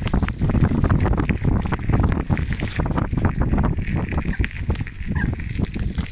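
Wind rumbling on the microphone of a camera carried on a moving bicycle, with rapid irregular knocks and rattles as it is jolted along a bumpy path.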